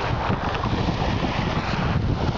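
Lake breeze buffeting the microphone in a constant low rumble, over a steady wash of small Lake Superior waves lapping at a pebble shore.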